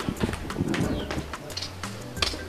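A dove cooing: a few soft, low hoots.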